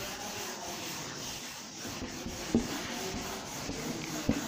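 Whiteboard eraser rubbing across a whiteboard, wiping off marker writing in continuous strokes, with one light knock about two and a half seconds in.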